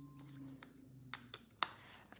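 Three light clicks from a plastic spice container and measuring spoon being handled, the last the sharpest, over a faint low hum.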